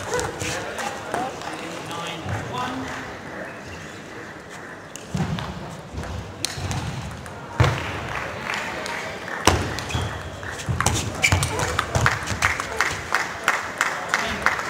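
Table tennis ball clicking off bats and the table in rallies, with a quick run of hits near the end.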